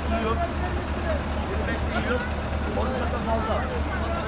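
Several men talking over one another in a tense confrontation, over a steady low rumble.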